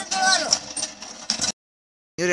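Speech only, cut off abruptly about a second and a half in, followed by dead silence.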